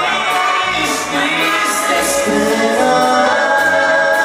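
Live band music played loud through a stage sound system, with singing over held chords and a steady beat kept by bass and cymbals.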